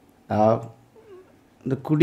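A man's voice on a public-address microphone: one drawn-out syllable falling in pitch, a pause, then speech starts again near the end.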